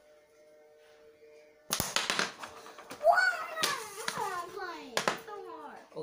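A single sharp knock about two seconds in, then a child's voice calling out in sliding, sing-song pitches, with a second sharp knock near the end. A faint steady hum runs underneath.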